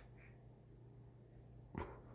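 Near silence with a low steady hum, broken by one short sharp knock near the end.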